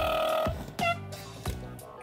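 A steady musical tone, held and then ending about half a second in, followed by a few brief high gliding sounds.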